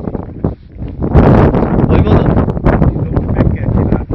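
Wind buffeting the microphone in loud, uneven gusts, with indistinct voices under it.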